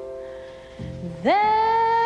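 Live jazz ballad: a woman's voice swoops up steeply about a second in and holds a long, loud note with wide vibrato, sung without words, after softer held tones die away.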